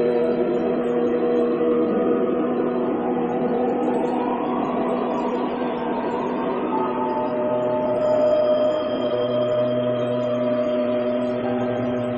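Tibetan singing bowls ringing in long, overlapping sustained tones, several pitches at once. New, higher tones come in partway through, and a low hum joins briefly.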